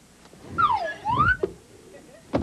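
Slide-whistle sound effect: one pitch swooping down and then back up, lasting about a second, as a comic exit cue.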